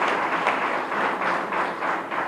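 Hall audience applauding, the clapping slowly dying down.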